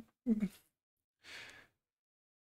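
A person's voice: a short voiced sound about a quarter second in, then a soft breathy sigh about a second later.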